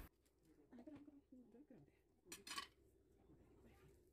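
Near silence, with a few faint clinks of a serrated knife and garlic cloves against a stainless steel bowl, the clearest about two and a half seconds in.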